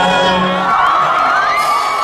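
Large concert crowd cheering and whooping as the band's sustained low note stops, under a second in, leaving many voices shouting.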